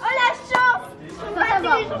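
Several people talking and chattering together, with one short click about half a second in.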